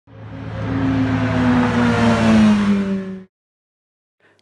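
A car engine running at high revs, its pitch falling slowly as the sound swells up. It cuts off abruptly a little after three seconds.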